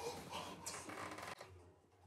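Faint rustling of people moving on a sofa, dying away to near silence about a second and a half in.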